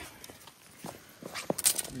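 Footsteps on stone pavers, then a few light clicks and a brief rustle as a hand takes hold of a drone's folding propellers.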